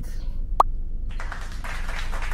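A single quick pop with a fast rising pitch about half a second in, in the manner of an editing sound effect, followed from about a second in by a soft, even noisy rush.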